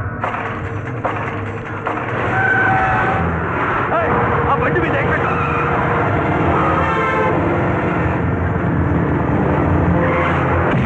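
Motor vehicles on a road, a truck and an SUV, running in a film soundtrack mix, getting louder about two seconds in, with long steady horn-like tones over the engine noise.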